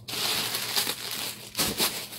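Plastic wrapping of a toilet-paper multipack crinkling as a hand grabs and shifts it, with louder crackles a little under a second in and again near the end.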